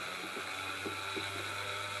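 Small DC motor driving a DC generator, running with a steady whirr; a low hum joins about half a second in.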